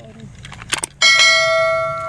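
A couple of sharp clicks, then about a second in a single bell strike that rings on at one steady pitch and slowly fades: the click-and-ding sound effect of an on-screen subscribe button and notification bell.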